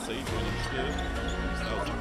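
A basketball being dribbled on a hardwood court, with music and arena crowd noise underneath.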